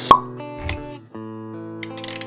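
Intro music with held notes, marked by a sharp pop just at the start and a low thud a little later. The music drops out briefly about a second in, then comes back.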